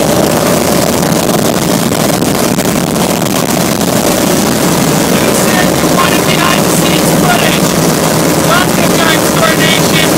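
Small aircraft's engine and propeller running, a loud, steady noise with no letup. From about halfway a man's voice is shouted over it.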